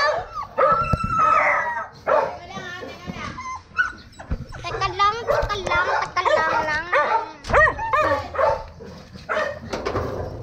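A dog barking repeatedly in short, high calls, with whines in between.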